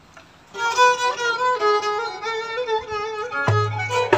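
Solo violin starts a slow, ornamented folk melody with vibrato about half a second in. Near the end, low hand-drum strokes join in.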